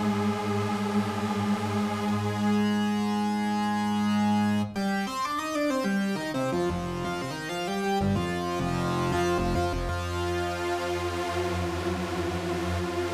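Moog One polyphonic synthesizer playing thick chords in unison mode, many detuned oscillators stacked on each note. One chord is held for the first few seconds, then the chords change abruptly, with notes sliding in pitch in the middle before new chords are held.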